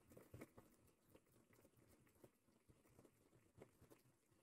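Near silence, with a few faint scattered ticks.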